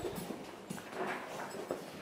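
A pony's hooves clopping faintly and unevenly on the barn aisle floor as it is led at a walk.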